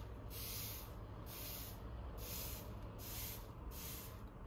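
Handheld plant mister spray bottle squeezed over and over, giving a string of short hissing sprays of fine mist, about one a second.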